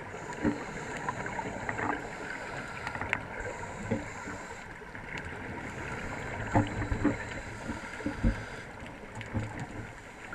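Muffled underwater sound heard through a camera housing: scuba regulator breathing, with a hiss that comes and goes and a gurgling rush of exhaled bubbles. There are a few dull thumps, the loudest a little past the middle.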